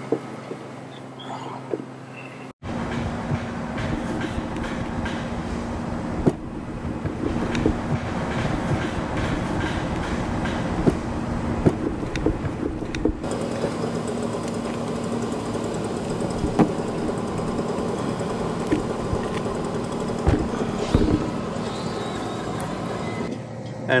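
Steady rumbling hum of rooftop air-conditioning machinery running, with scattered ticks and scrapes. The sound changes abruptly at edits about two and a half, six and thirteen seconds in.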